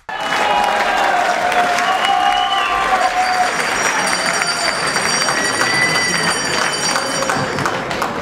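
A seated audience in a large hall clapping, with many voices talking and calling out over the applause; it starts abruptly and stays steady throughout.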